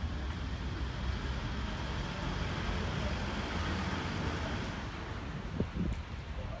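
Road traffic noise: a steady low rumble of vehicles, swelling in the middle as a car goes by.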